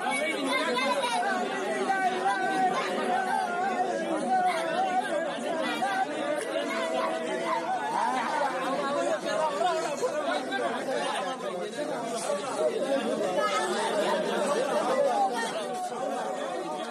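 A young girl crying and wailing, over a dense murmur of overlapping adult voices from mourners crowded around her.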